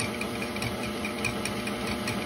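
Electric stand mixer running steadily on low speed (setting two), its whisk attachment spinning through a thin liquid mix of sweetened condensed milk and half and half in a stainless steel bowl.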